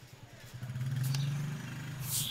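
A motor vehicle's engine running nearby, a low steady hum that grows louder about half a second in and then holds.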